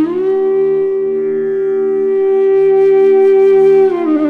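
Bansuri (Indian bamboo flute) playing in Raag Bihag: it glides up into one long held note and slides down off it near the end, over a steady drone.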